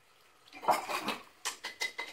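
A paintbrush clinking against a glass jar. A short rustle is followed by four quick clinks, the last with a brief glassy ring.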